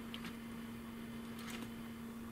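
A faint, steady low hum, with a few soft clicks as clip leads are handled to reconnect a battery.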